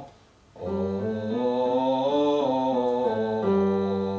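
A man singing a five-note vocal warm-up scale on an 'oh' vowel, low in the male range, stepping up note by note and back down to a longer held final note, with electric keyboard accompaniment.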